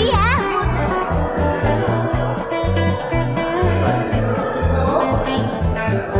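Background music: guitar over a steady bass and drum beat.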